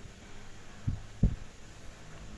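Two low thumps about a third of a second apart, around a second in, the second one louder, over a low steady hum.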